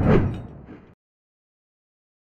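A whoosh transition sound effect with a heavy low end, starting sharply and dying away within about a second.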